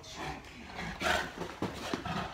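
A Boerboel mastiff gives a loud, rough play growl about halfway through, with a couple of short thumps near the end.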